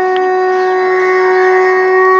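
A conch shell (shankh) blown in one long, steady note, held without wavering.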